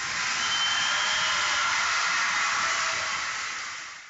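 A steady hiss that holds level and fades out near the end.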